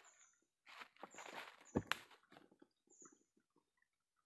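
Quiet rustling and scuffing of a person moving about on leaf-strewn ground, with one sharp click a little under two seconds in.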